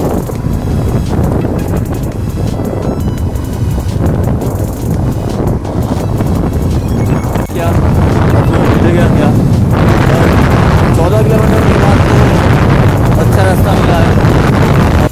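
Wind rushing over a phone microphone on a moving motorcycle, with the engine running underneath. It gets louder about seven and a half seconds in.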